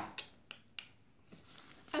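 Three sharp clicks in quick succession, about a third of a second apart, then near quiet.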